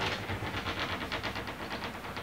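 Sliding framed glass shower door in an RV bathroom rolling along its track: a rapid, even clatter of about eight to ten clicks a second.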